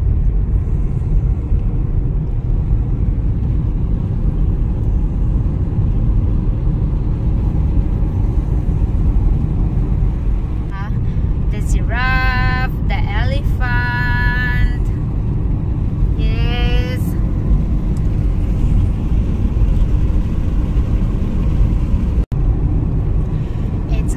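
Steady low rumble of a car's road and engine noise heard from inside the moving cabin. A high voice comes in briefly a few times in the middle, and the sound drops out for an instant near the end.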